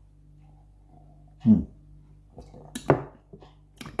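A man sipping beer quietly, then a short "hmm" with falling pitch about a second and a half in, and a sharp knock near three seconds as the glass is set down on the tabletop.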